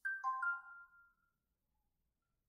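A short electronic two-note chime that rings for about a second and fades away, a slide-transition sound effect.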